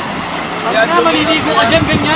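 People talking nearby, the words unclear, over a steady low background rumble.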